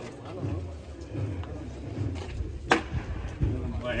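Shuffling footsteps of a team of costaleros walking on asphalt under a procession float's rehearsal frame, with faint voices around them. One sharp knock comes about two-thirds of the way through.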